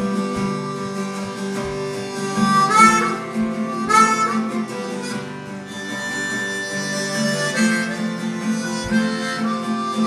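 Harmonica playing a melody over a strummed acoustic guitar, with a couple of bent notes about three and four seconds in.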